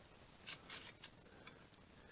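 Near silence with a few faint, short scrapes and ticks about half a second to a second and a half in: fingers handling and rubbing a pressed sheet-aluminum nose rib against its forming die.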